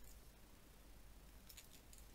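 Near silence: faint room hiss, with a few soft rustles of yarn and crochet hook near the end as the work is turned and crocheted.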